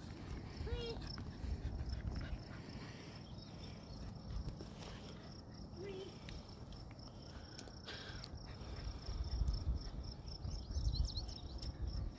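A steady, high-pitched insect trill over a low rumble, with a few short chirps in between.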